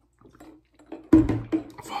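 A man gulping water from a large plastic water jug, the water sloshing, with a loud sudden sound about a second in as the drink breaks off.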